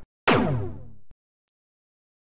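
Synthetic outro stinger sound effect: a sudden hit with a falling, downward-sweeping tone that fades over under a second and cuts off abruptly.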